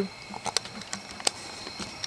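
Faint camera-handling noise: three or four soft clicks as the camera is moved and set in place, over a faint steady high-pitched hum.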